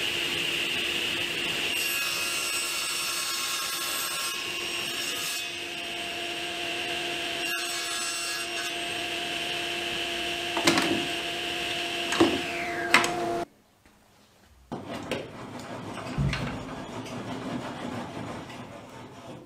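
Table saw running with a steady whine while ripping a narrow strip of plywood. The sound cuts off suddenly about two-thirds of the way through, and after a brief quiet come scattered knocks and handling noises.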